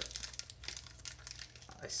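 Foil wrapper of a Magic: The Gathering booster pack crinkling as it is torn open by hand, a run of short crackles.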